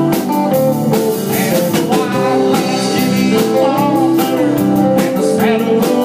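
Live country band playing: drum kit keeping a steady beat with cymbal strokes, under bass and guitars carrying the tune.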